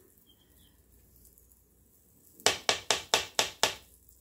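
A quick run of about eight sharp taps, a kitchen utensil knocked against a hard edge, starting about two and a half seconds in after near silence.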